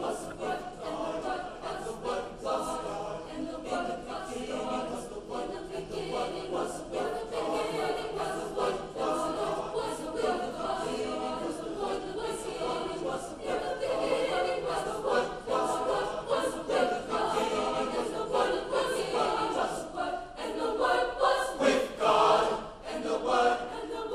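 Mixed high school choir of young male and female voices singing together in parts, with a short dip in loudness shortly before the end.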